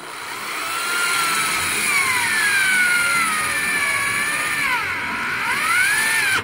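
Electric drill running a 1¾-inch hole saw through a boat's gunnel. The motor whine builds over the first second, then wavers and sags in pitch as the saw bites, dipping most about five seconds in.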